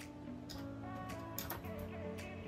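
Quiet background music with held notes, with a few faint clicks about half a second and a second and a half in as thermal tape is pulled and pressed onto a ceramic mug.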